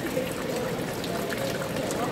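Steady rushing background noise, even in level, with faint distant voices in it.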